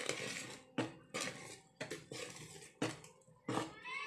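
Wire balloon whisk beating red velvet cake batter by hand in a plastic bowl: a quick run of swishing strokes, the wires scraping against the bowl about every half second to second.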